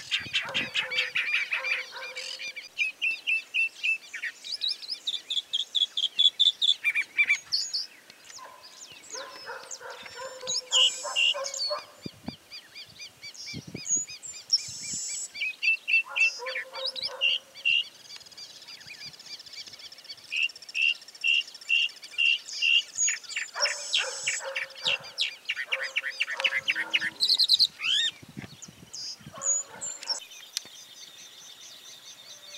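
A mockingbird singing a long, varied song: runs of quickly repeated clear notes alternating with harsher, nasal phrases, broken by a few short pauses.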